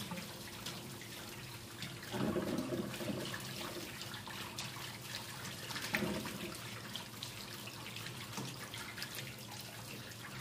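Water running from a shower hose into a tub of water in a stainless-steel sink, a steady rush of water, louder for about a second starting two seconds in and briefly again around six seconds.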